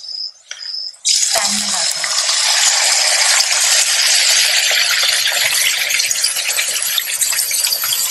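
Yogurt-marinated chicken pieces dropped into hot oil in a frying pan, setting off a loud sizzle about a second in that carries on steadily as they fry.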